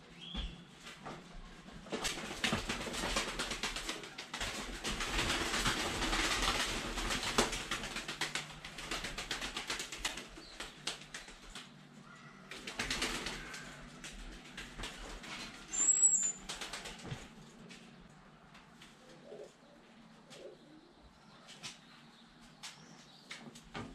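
Pigeons flapping their wings in a loft as they are caught by hand: a long flurry of wingbeats lasting several seconds, a shorter one a few seconds later, and a brief high chirp near the end.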